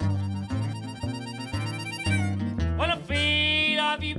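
Old-time blues band playing live: acoustic guitar and upright bass keep a walking, plucked rhythm, and a harmonica comes in about three seconds in with a long held note that slides up at its start.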